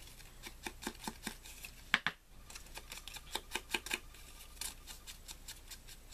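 A small ink applicator is rubbed and dabbed along the edge of a cardstock paper spiral, applying Abandoned Coral Distress Ink. It makes a run of short, irregular scratchy strokes with paper rustling, and there is one sharper tap about two seconds in.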